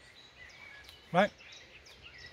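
Faint birdsong: scattered short chirps over a quiet outdoor background hiss.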